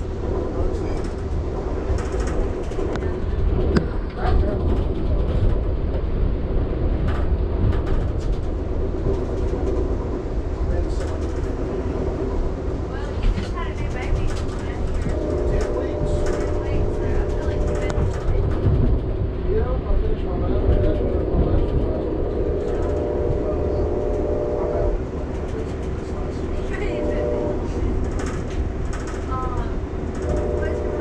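Amtrak passenger train heard from inside the coach, its wheels rumbling steadily on the rails. From about halfway through, the locomotive horn sounds a chord in a long, long, short, long sequence, the standard warning for a grade crossing.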